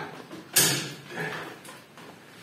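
Metal bonsai tool levering doubled wire tight around a rebar brace on a pine trunk: one sharp metallic click about half a second in, then a few faint handling sounds.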